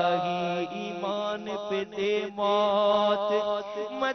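A man singing an Urdu devotional supplication (munajat) in long, drawn-out melodic notes that bend and glide between pitches, with a few brief breaths between phrases.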